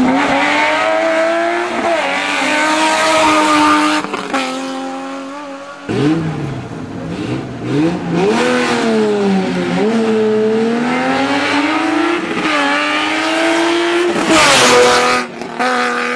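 BMW E30 rally car engine revving hard under full throttle, its pitch climbing and dropping over and over with the gear changes and lifts for corners. It comes as several separate passes joined by abrupt cuts.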